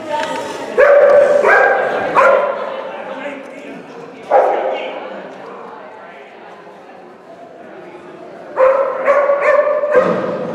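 A dog barking excitedly while running an agility course: a burst of barks about a second in, single barks near two and four and a half seconds, and another cluster near the end.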